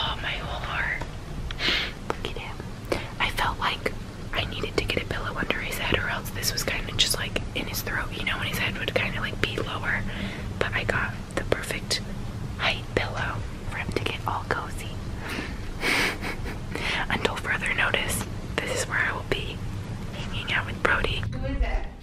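A woman whispering in short, breathy phrases over a low steady hum.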